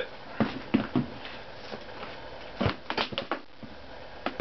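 Scattered sharp clicks and knocks from unplugging and handling the power cord of an electronic air cleaner that has just been switched off, with a tighter run of clicks about three seconds in.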